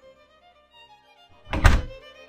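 Quiet background music with a single heavy thunk, deep and sudden, about one and a half seconds in.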